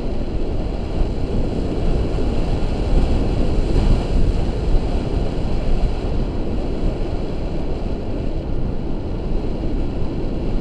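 Steady wind buffeting the microphone of an action camera carried through the air in paraglider flight: a loud, low, fluttering rush with a slight swell about four seconds in.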